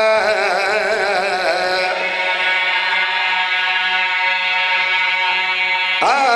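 A zakir's voice in sung majlis recitation: a drawn-out wavering line with strong vibrato, then one long note held almost steady for about four seconds, with a new phrase starting near the end.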